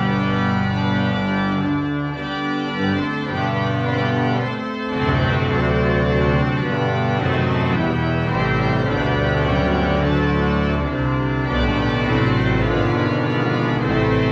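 Moser pipe organ playing full sustained chords over deep bass notes, the chords changing every second or so, with a brief break about five seconds in.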